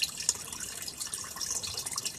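Water steadily trickling and splashing in an aquarium made from an old washing-machine tub, driven by a small submersible filter pump and its return hose. One brief louder click sounds just after the start.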